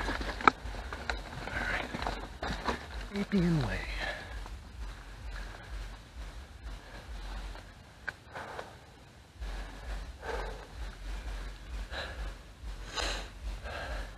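Mountain bike rolling over a dirt trail, with low rumble on the camera microphone that eases off for a few seconds in the middle and scattered rattles and clicks from the bike. The rider breathes audibly, with a short falling voice sound about three seconds in.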